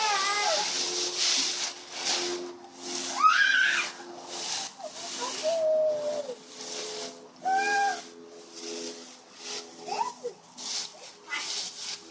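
Dry leaves rustling and crunching as a toddler digs through a plastic wading pool full of them, heaviest in the first couple of seconds. The child's short, high-pitched wordless squeals and calls break in several times.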